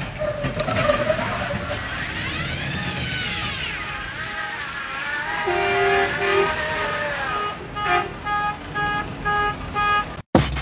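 An electronic alarm wails up and down, then switches near the end to short repeated beeps about twice a second, over the noise of vehicles running nearby.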